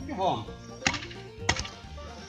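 Two sharp strikes of a heavy grub hoe (enxadão) biting into hard, compacted garden soil, about half a second apart, as the ground is loosened.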